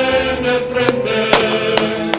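Choir singing long held notes over a steady musical backing, crossed by a few sharp clicks.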